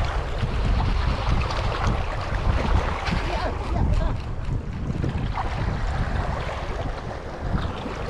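Wind buffeting the microphone in uneven gusts, over the wash of small waves against shoreline rocks.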